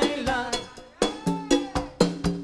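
Live Latin rock band playing. Hits from a drum kit and Latin percussion (congas and timbales) keep a steady rhythm under pitched melody lines, and the music drops back briefly just before the middle.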